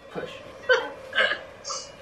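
Quiet speech: a few short, soft syllables spaced about half a second apart, with a brief hiss near the end.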